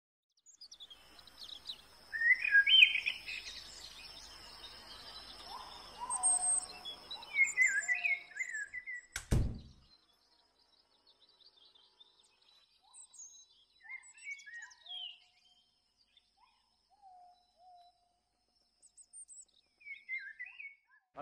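Birds chirping in short rising and falling calls over a steady background hiss, with a single loud thump about nine seconds in; after it only scattered chirps remain.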